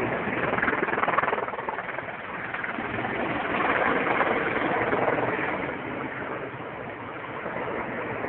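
Heavy firefighting helicopter (an Erickson S-64 Air-Crane) heard at a distance as a steady rushing drone of engines and rotor. It swells in loudness around the middle and then eases off.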